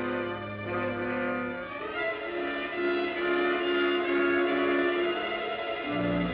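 Film score music: long held chords that change to a new set of chords about two seconds in.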